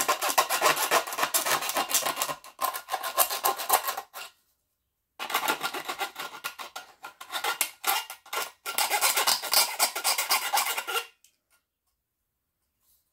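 A small file on a multitool rasping against the cut rim of a tin can in quick back-and-forth strokes. It comes in two runs, about four and six seconds long, with a break of about a second between them.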